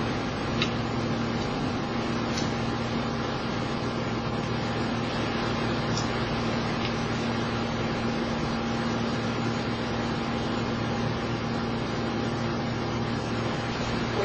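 Steady background machine hum: an even hiss with a constant low tone. A few faint clicks come in the first several seconds.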